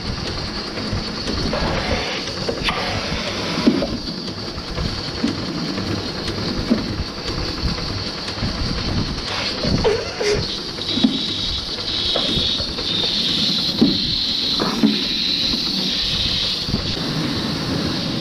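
Lely robotic milker attaching its teat cups: the milking vacuum hisses steadily under scattered clicks and knocks from the arm and cups. One cup misses its hookup and draws air, and the hiss gets louder after about eleven seconds.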